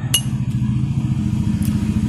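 A motor vehicle engine running with a low, rapid pulsing, slowly getting louder. A single sharp click shortly after the start.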